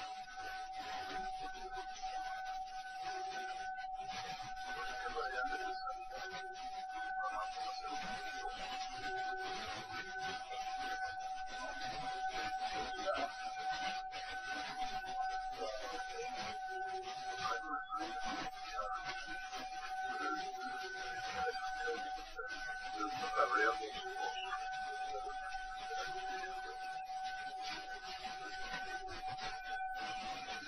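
Cockpit voice recorder background of a DC-9 cockpit: a steady hiss with a constant electrical hum tone and weaker tones that come and go, with faint, indistinct sounds now and then.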